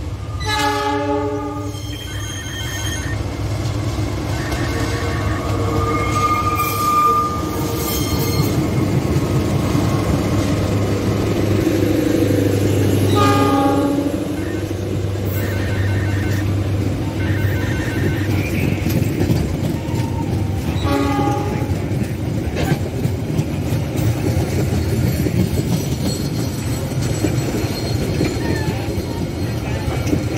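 CC206 diesel-electric locomotive hauling a passenger train sounds its horn: one blast about a second in, another near the middle and a shorter one about two-thirds through. Under the horn, a steady low rumble of the locomotive and its coaches rolling past on the rails.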